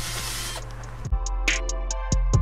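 Steady background hiss for about the first second, then background music with a drum beat starts about halfway through.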